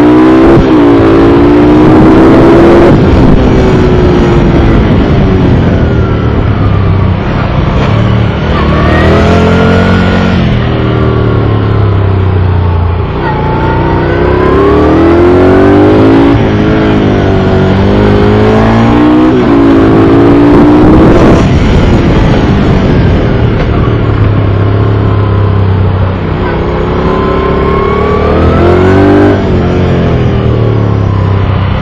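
Moto Guzzi V11 Sport's air-cooled transverse V-twin heard on board at track speed, its revs climbing and dropping back several times as the bike accelerates and shuts off. Wind rush runs under it.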